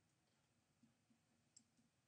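Near silence, broken by a few faint ticks about a second in as a ballpoint pen touches down on paper to start writing.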